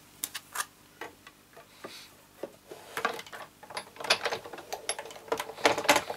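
Sigamay Big Shot die-cutting machine and its clear plastic cutting plates and magnetic platform being handled and moved across a craft table: scattered light clicks and taps at first, then a busier run of clicks and knocks in the second half, the loudest near the end.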